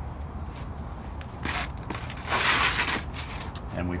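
Gritty scraping of an asphalt shingle being handled and slid over other shingles: a short scrape about a second and a half in and a longer, louder one around two and a half seconds in, over a steady low background rumble.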